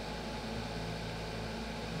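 Steady low hum with a faint hiss underneath: the background noise of the recording, with no separate event.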